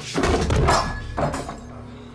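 A heavy thump as a man's head is slammed down onto a wooden bar counter, mixed with a man's laugh, then a second, shorter knock a little over a second in.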